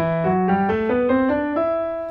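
Piano playing an ascending E minor scale in octaves, about eight notes stepping up from E to the E above, the top note held.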